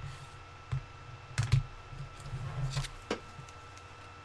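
Irregular clicks and knocks of things being handled on a tabletop, with dull low thuds under them. The loudest pair comes about a second and a half in, a scrappier run follows around two and a half seconds, and a single sharp click comes just after three seconds.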